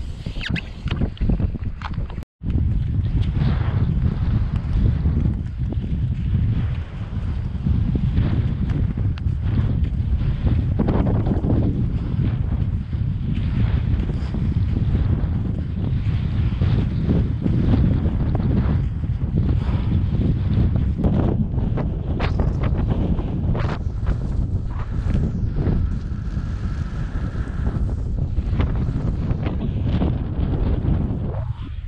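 Wind buffeting the microphone as a skier moves over open snow, a steady low rumble with the scrape and swish of skis and poles on the crusty spring snow mixed in.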